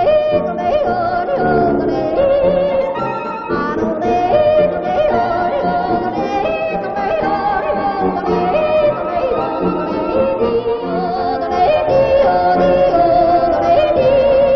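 Yodeling song with instrumental accompaniment, played from an old Decca 78 rpm record; the voice wavers and breaks between registers, and the sound is cut off above the upper treble.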